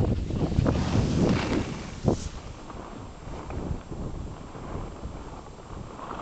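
Wind rumbling on the camera microphone on a ski slope, loudest in the first two seconds and then easing off, with a couple of short knocks.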